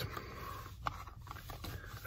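Faint rustling of a hot dog in its wrapper being handled, with one small click about a second in.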